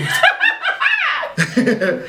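A man and two women laughing together, with a high-pitched burst of laughter in the first second.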